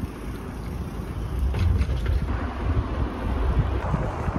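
Wind buffeting the microphone of a camera carried on a moving bicycle, a steady low rumble.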